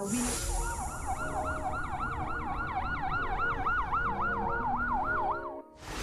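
A siren's rapid yelp, its pitch sweeping up and down about four times a second over a low rumble. It starts abruptly and cuts off suddenly near the end.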